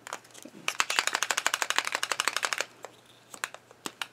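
Posca paint marker being shaken for about two seconds, its mixing ball rattling inside in a fast, even run of clicks. A few light clicks and taps come before and after it.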